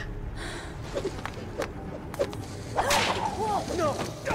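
Climbing rope swishing and rubbing as a person descends it down a rock wall, with a few sharp clicks and a louder swish about three seconds in, followed by wavering squeaks.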